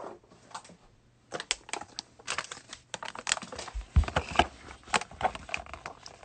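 A box of baseball cards being handled and opened by hand: a quick, irregular run of small clicks, scrapes and crinkles of cardboard and wrapping starting about a second in, with a dull thump about four seconds in.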